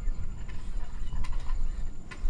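Sharpening-stone arm handled on the sharpener's guide rod: a few faint clicks, over a steady low rumble.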